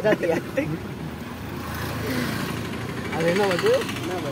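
A road vehicle passing, its noise swelling about two seconds in and fading, with a man's voice talking and laughing at the start and again near the end.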